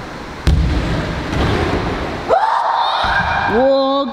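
A BMX bike lands with a sharp bang on a ramp about half a second in, followed by the low rumble of its tyres rolling out. From about two seconds in, riders give long, drawn-out cheering shouts.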